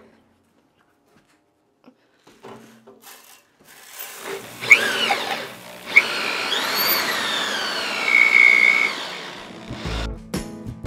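Cordless drill driving a roller grain mill, crushing malted barley poured into the hopper; the motor whine rises and falls with the trigger, then runs fairly steadily until just before the end. The first few seconds are quiet.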